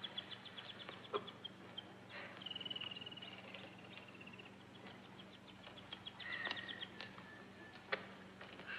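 Faint birdsong: quick runs of high chirps, a trill starting about two and a half seconds in, and another chirping phrase near the end, over a steady low hum and a few soft clicks.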